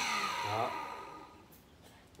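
Small electric water pump switching off and coasting down, its steady hum fading away over about a second, as the float switch is lifted to the 'tank full' position. A short breath or grunt about half a second in.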